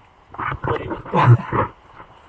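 A man laughing in several short, breathy bursts with no clear words.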